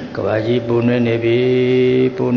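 A Buddhist monk's voice chanting, intoning words on a steady pitch and holding the note level for over a second through the second half.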